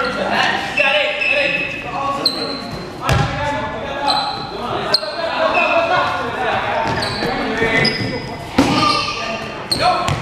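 Basketball being dribbled and bounced on a gym court, with short high-pitched sneaker squeaks and indistinct players' voices and shouts, all echoing in a large hall. A few sharper thumps stand out, about three, five and eight and a half seconds in.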